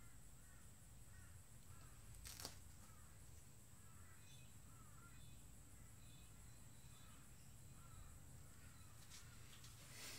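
Near silence with faint bird chirps in the background, repeating every second or so, and one soft click about two and a half seconds in.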